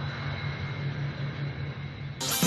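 Twin jet engines of a Sukhoi T-50 fighter running at takeoff power as it lifts off, a steady rushing noise with a low rumble.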